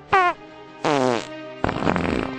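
Three comic fart sound effects in a row: a short one falling in pitch, a longer one falling in pitch about a second in, then a rougher, lower one near the end.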